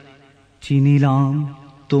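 A man's voice reciting Bengali poetry: one long syllable drawn out at a steady pitch, starting a little over half a second in and fading before the end.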